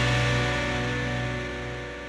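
Musical transition sting of a TV quiz show playing under the logo graphic: one held chord with a hissing wash over it, fading gradually.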